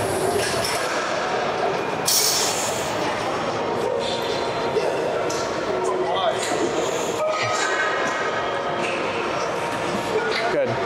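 Busy gym ambience: a steady din of background chatter and equipment noise, with a few metal clinks from the weight plates and machine.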